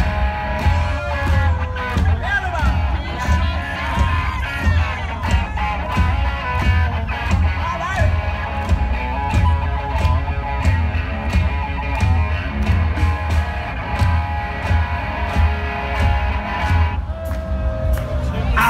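A live rock band with electric guitars, bass and drums playing loud through a stage PA over a steady drumbeat, with heavy bass. It is heard from within the audience.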